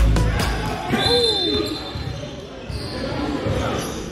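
Gym sound of a basketball game. A referee's whistle gives a short, steady blast about a second in, amid ball bounces, sneaker squeaks and players' voices. Dance music fades out at the start.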